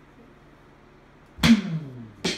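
Electronic drum kit played with sticks: a pause of more than a second, then a single hit about a second and a half in, whose low ring sinks in pitch as it dies away.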